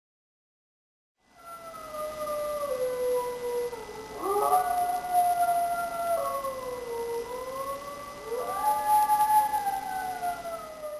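Several wolves howling, their long, slowly gliding howls overlapping. The first begins about a second in, others join about four seconds in, and a rising howl comes in near the end.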